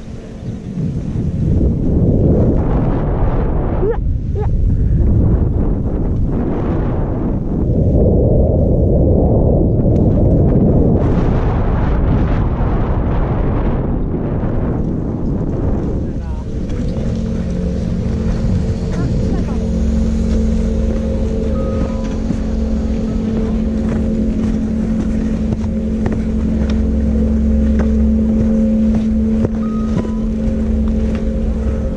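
Skis sliding over snow with wind buffeting a helmet-mounted action camera's microphone, in loud, uneven swells during the descent. From about halfway in, as the skier slows, a steady mechanical hum with a low drone takes over.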